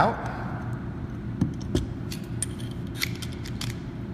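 A few light, scattered metal clicks and taps as a small screwdriver works under the rubber seal disc on a backflow preventer's check-valve clapper plate to pry it out, over a steady low hum.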